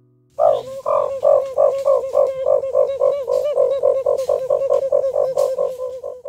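A boy making a rhythmic call at his mouth with his hand held to his lips: a quick run of pitched, two-toned pulses, about three or four a second, starting abruptly about half a second in.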